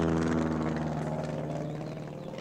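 Vintage propeller biplane flying overhead, its piston engine running at a steady pitch and growing gradually fainter as it passes.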